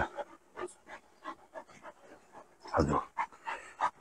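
Large shepherd dog panting in short, quick breaths.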